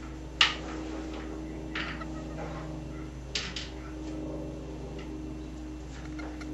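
A steady low hum with a few short handling noises over it, the first about half a second in and a pair of quick ones a little past the middle.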